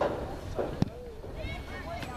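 Distant voices from players and spectators on a soccer field over a steady open-air background, with a single sharp knock just under a second in.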